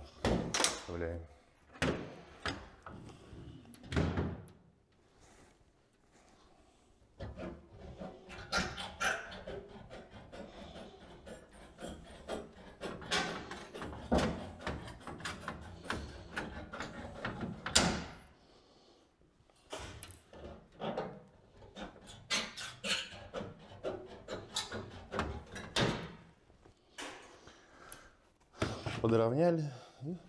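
Sheet-metal roofing panel being folded and evened up by hand with hand seamers: irregular clanks and sharp taps of the tool on the metal, with scraping and rustling of the sheet between them.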